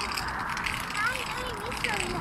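Street ambience by a road: a steady wash of distant traffic, with a few short whistle-like calls that glide up and down.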